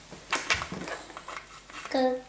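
A few light clicks and clatters of the Pop-Up Olaf game's plastic ice-sword pieces being handled and pushed into the plastic barrel, with a child's voice starting at the very end.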